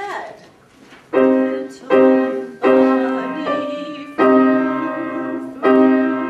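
Grand piano playing a run of block chords, each struck firmly and left to ring, starting about a second in.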